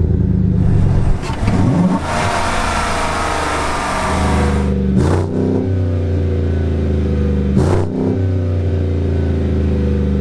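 GMC Sierra's 5.3-litre V8, heard at the exhaust tip, running just after being started: it rises in pitch briefly about a second and a half in, falls back over the next few seconds, then settles into a steady idle.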